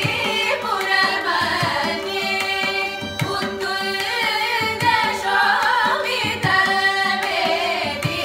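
Carnatic vocal ensemble of women singing in unison in raga Bilahari, accompanied by mridangam strokes and violin over a steady drone.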